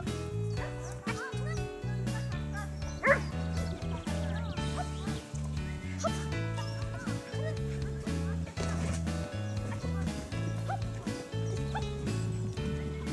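Background music playing throughout, over which a dog barks several times in short yips, the loudest bark about three seconds in.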